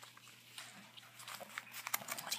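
Faint rustling and small crackles of printer paper being folded and pressed flat by hand, with a few more light clicks near the end.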